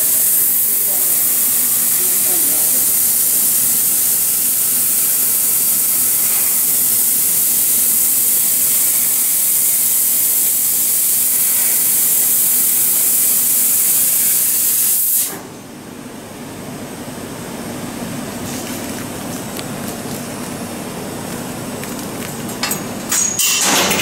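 Fiber laser cutting machine cutting steel plate: the cutting head's gas jet gives a loud, steady hiss that cuts off suddenly about fifteen seconds in, leaving a quieter machine hum. A few sharp clicks come near the end.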